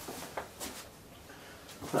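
Quiet lull of faint room hiss, with a few light clicks in the first second.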